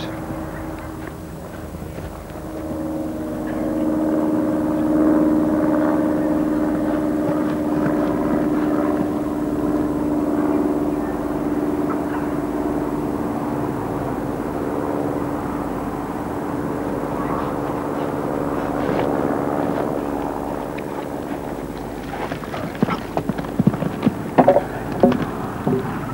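A show-jumping horse's hoofbeats on turf over a steady low drone. Near the end come several sharp knocks as the horse jumps a fence and brings a rail down.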